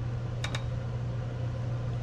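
A steady low hum with a faint double click about half a second in.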